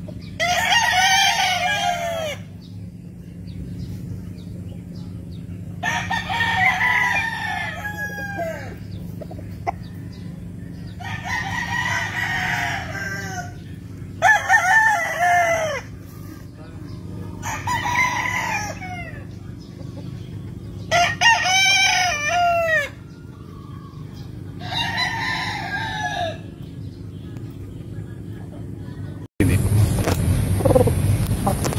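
Gamefowl roosters crowing: about seven crows, each about two seconds long and a few seconds apart, over a steady low hum.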